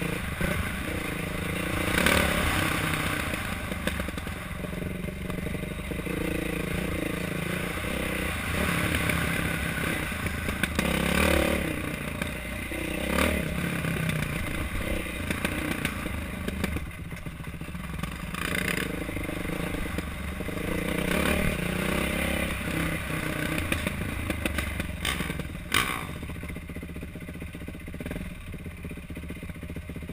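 Dirt bike engine running under load on a rough trail, its revs rising and falling with the throttle, with clatter and scraping from the bike over rocks and ruts.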